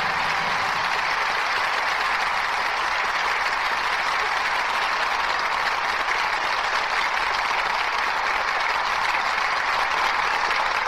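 Studio audience applauding steadily at the close of a live radio drama, with the last of the closing music dying away in the first moment.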